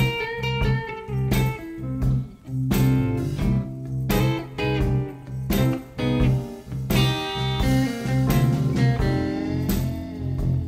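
Fender Telecaster electric guitar playing blues lead lines with short major-sixth chord stabs thrown in between them, call-and-response style, over a blues backing track with a steady bass line and beat.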